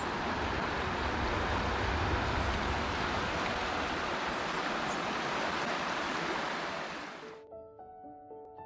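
Rouge River rapids rushing: a steady roar of fast water over rocks. It cuts off suddenly near the end, and soft piano music follows.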